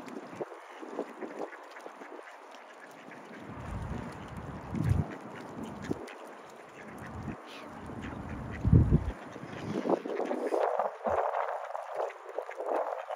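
Mallard ducks quacking on and off, with a few short low rumbles in between, the loudest about nine seconds in.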